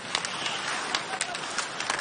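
Ice hockey arena sound: a steady crowd murmur, broken by about six sharp clacks of sticks and puck on the ice and boards during play in front of the net.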